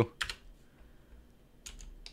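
A few computer keyboard keystrokes: one click about a quarter second in, then two or three quick clicks near the end, over quiet room tone.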